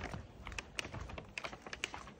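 Takeout bags being handled and set down at a doorstep: irregular light clicks, taps and rustles.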